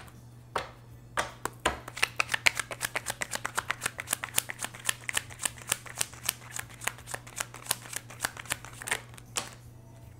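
A tarot deck being shuffled by hand: a quick run of short card clicks, several a second, from about a second in until near the end.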